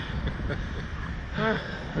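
Wind noise on the microphone of a camera mounted on the Slingshot ride's capsule as it hangs and sways high in the air, with a short vocal sound from a rider about one and a half seconds in.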